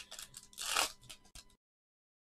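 Wrapper of a 2020 Optic Football hobby card pack being torn open and crinkled. It is a run of short crackles and rustles, the loudest just under a second in, cutting off about one and a half seconds in.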